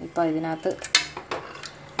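One sharp clack about a second in as a plastic spatula strikes an aluminium pressure-cooker pot, followed by a few lighter taps and scrapes as it goes into the tomatoes.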